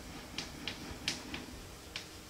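A run of short, sharp clicks, irregularly spaced at about two or three a second.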